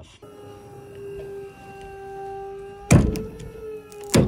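Pull-test rig's motor whining steadily as it loads a ring-loaded bowline on a bight in a Dyneema sling, then a loud sharp bang about three seconds in as the sling breaks near its full rated strength; the motor keeps whining after the bang.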